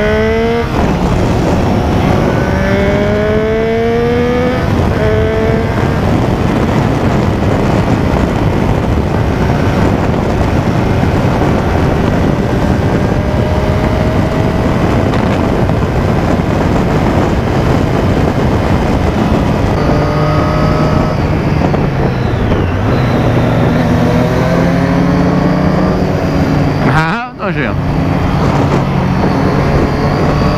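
Motorcycle engine accelerating hard, its pitch climbing in rising sweeps through the gears, under heavy wind rush on the helmet microphone. Through the middle stretch the wind noise dominates at steady speed, and the engine climbs again in rising sweeps a few seconds before the end.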